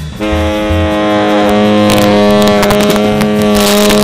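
Tenor saxophone holding one long low note in a free-jazz improvisation, with drum and cymbal hits landing about halfway through and again near the end.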